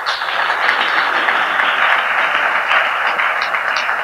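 Audience applauding, a steady clapping of many hands.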